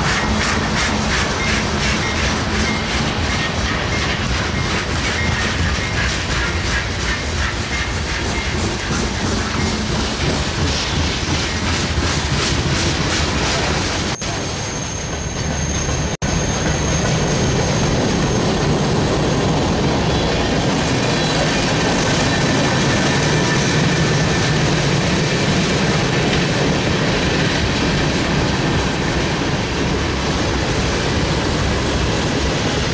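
A freight train rolls past at speed. The trailing diesel locomotives go by first, then a long string of hopper and tank cars, their wheels clattering steadily over the rail joints. A brief high-pitched wheel squeal comes about halfway through.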